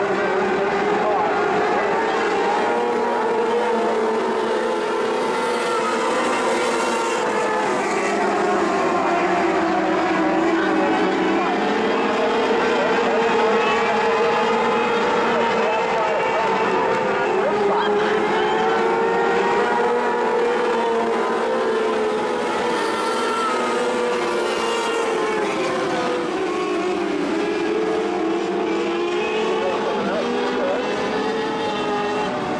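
A pack of micro modified dirt race cars running at racing speed on the oval. Several engines overlap, their pitch rising and falling in waves as the cars go down the straights and back off into the turns.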